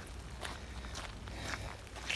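Footsteps on a wet gravel path at a steady walking pace.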